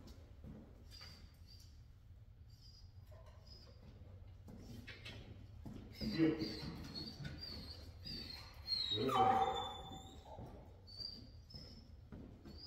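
German Shepherd whining in short, high-pitched whimpers, over and over, while it heels beside its handler.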